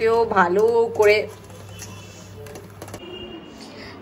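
A woman's voice speaking briefly for about the first second, then only a low background hum and faint room noise.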